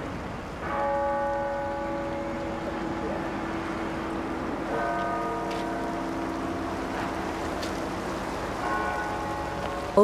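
A bell tolling three times, about four seconds apart, each stroke ringing on with several tones that fade slowly.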